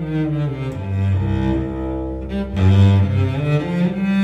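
Solo cello bowing long, sustained low notes, moving to a new note about a second in and again past halfway.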